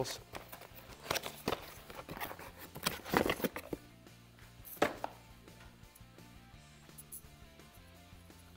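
Handling noises as a new mechanical fuel pump and its cardboard box are lifted and moved: rustling and a few knocks, the sharpest a single thump about five seconds in, over a low steady hum.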